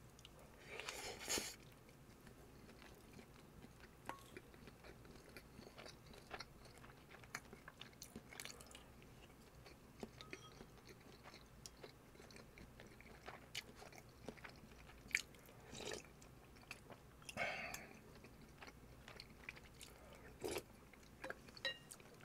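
Quiet, close-miked chewing of a mouthful of bulgogi and rice, with scattered soft clicks and a few louder moments, about a second in and again in the second half.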